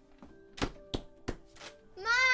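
Knocking on a wooden front door: three firm knocks about a third of a second apart, with a couple of lighter taps around them.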